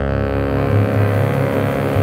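Jazz quartet music: low bass notes are loudest, with a hiss of cymbals above them.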